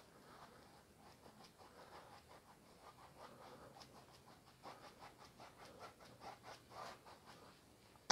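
Faint scratching of an oil-paint brush stroking and dabbing paint onto canvas: a run of many short, quick strokes, a little louder in the second half.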